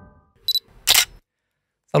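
The last held notes of an intro jingle fade out, then comes a short edited transition sound effect: a brief high click about half a second in, followed by a short burst of noise just before a second.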